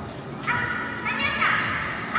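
Children calling out in high voices, two shouts with the second one longer, over crowd chatter.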